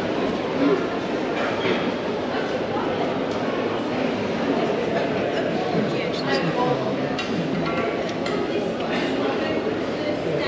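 Steady crowd chatter, many people talking at once in a large indoor exhibition hall, with no single voice standing out.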